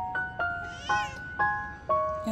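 Background music of bright, evenly spaced notes, with a Scottish Fold kitten giving one short, high-pitched mew about a second in.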